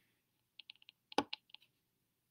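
A run of about eight short, soft clicks over about a second, a little irregular, the loudest two near the middle.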